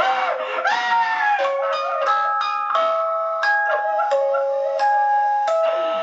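Soundtrack music: a slow melody of single plucked or keyboard notes, about one or two a second, each starting sharply and ringing on. A brief wavering, gliding sound comes in the first second or so.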